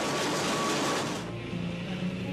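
Heavy tunnelling machinery running underground: a dense, steady mechanical din. About a second in it cuts off and gives way to quieter, steady low tones.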